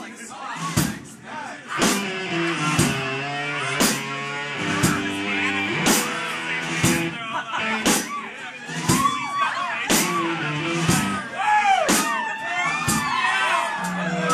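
Live rock band playing a sparser, quieter passage: a drum hit about once a second under guitars playing bending, wavering notes.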